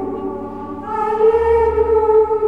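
A choir singing slow, sustained chords, with a new chord swelling in about a second in.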